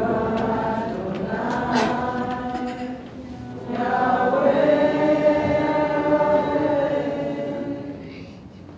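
A congregation singing together in long held notes, in two phrases with a short break about three seconds in; the singing dies away at the end.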